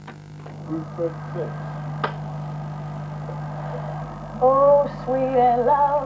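A steady low electrical hum with a few sharp clicks, then from about four and a half seconds a singing voice with vibrato comes in loudly and carries on.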